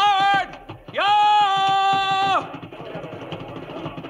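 A man's drawn-out shouted cavalry command: a short call sliding up in pitch, then one long held call. After it, a fainter, lower rumble with small clicks.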